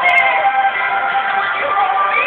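A woman singing with backing music, holding long notes.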